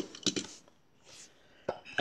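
Light clicks and taps of a small die-cast model car being handled and set down on a table mat: a quick cluster of clicks near the start and one sharp tap shortly before the end.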